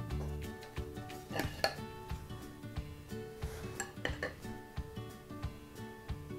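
Steel knife and fork clinking and scraping on a ceramic plate as a baked pork chop is cut, with a couple of sharp clinks about a second and a half in, a short scrape, and two more clinks about four seconds in. Soft background music plays underneath.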